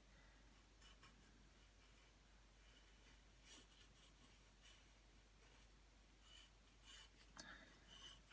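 Faint graphite pencil scratching on paper in short, irregular sketching strokes, with more strokes in the second half.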